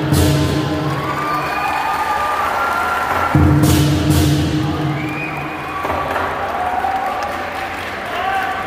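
Lion dance percussion of drum, cymbals and gong strikes two loud accents, one at the start and one about three and a half seconds in, each left ringing. Crowd cheering and applause run underneath and come forward as the ringing fades.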